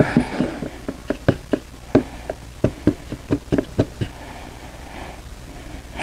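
Wooden paint stick knocking and scraping against the sides of a plastic mixing cup while metallic epoxy is stirred: a run of irregular light clicks, a few each second.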